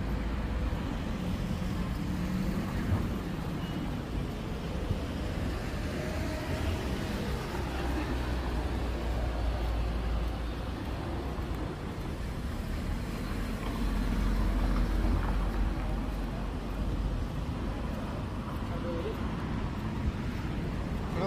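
Street ambience: wind rumbling on the microphone in gusts that come and go, over road traffic noise.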